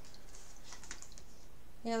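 Tarot cards being handled and drawn off a deck: a run of soft, crisp card clicks and flicks through the first second or so.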